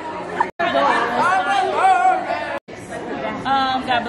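Voices talking over the chatter of a party crowd in a large room, cut off twice by brief moments of silence.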